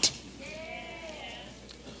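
A faint, drawn-out vocal sound from a person, one call lasting about a second that rises and then falls in pitch.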